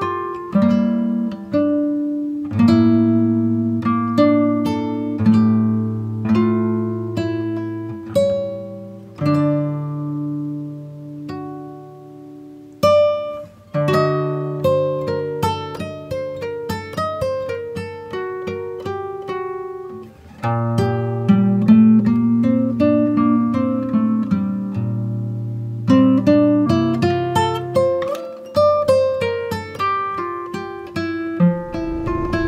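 Background music: an acoustic guitar playing a melody of plucked notes, each ringing and fading.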